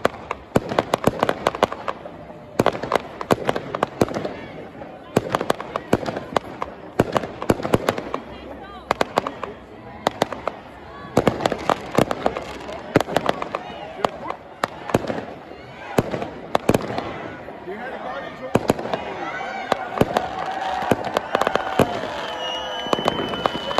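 New Year fireworks going off: a dense, irregular run of sharp bangs and crackles from aerial shells bursting overhead, several a second.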